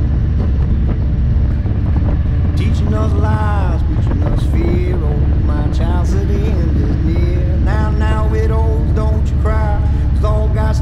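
Steady low rumble of a touring motorcycle and the wind at highway speed. Music with a singing voice comes in over it about three seconds in.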